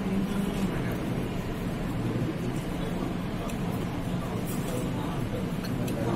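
A man talking, over steady low background noise.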